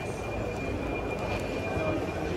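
Airport terminal concourse ambience: a steady background wash of noise with faint distant chatter of travellers and a thin, steady high tone.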